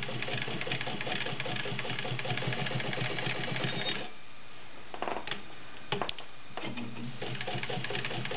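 Fleetwood 690 all-metal zigzag sewing machine running fast, stitching through five layers of denim. It stops about halfway through, and a few sharp clicks follow.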